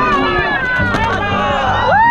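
Several people shouting and yelling at once, with high cries that slide up and down in pitch, as a bucking steer with its rider bursts out of the chute.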